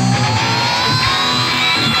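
Heavy metal music: distorted electric guitar riffing in short, chugging blocks, with a long high note gliding slowly upward over it.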